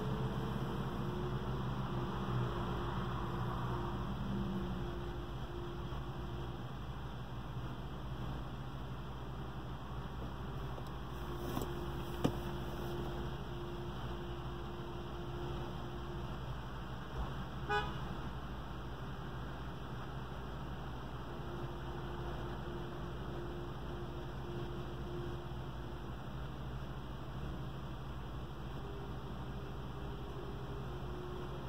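Car engine idling, a steady low hum heard inside the cabin of the stopped car. A faint tone comes and goes in stretches of a few seconds, with a couple of small clicks.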